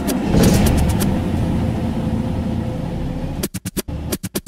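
A sampled car engine sound in an electronic track, running with a dense low rumble, then chopped into rapid stutters of about eight a second near the end.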